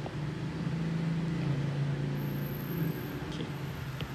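Low, steady engine hum of a road vehicle, growing louder about a second in and easing off near three seconds.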